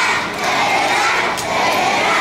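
A large group of young children's voices shouting together, loud, in phrases broken by short dips.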